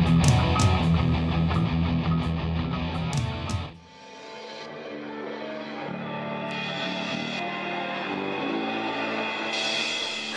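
Heavy metal music with distorted electric guitars and heavy bass, which cuts off abruptly about four seconds in. It is followed by quieter live sound of a metal band on a club stage, with sustained guitar notes and drums, growing slowly louder.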